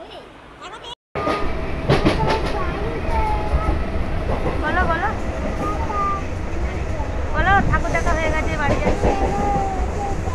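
Steady low rumble of a passenger train running, heard from inside the carriage, starting after an abrupt cut about a second in. A young child's voice comes and goes over it.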